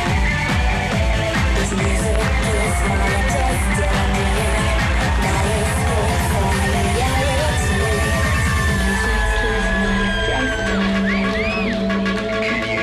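Electronic hard-dance track with a fast, steady four-on-the-floor kick drum under synth lines. About nine seconds in the kick drops out, leaving sustained bass and synth, with rising and falling synth glides near the end.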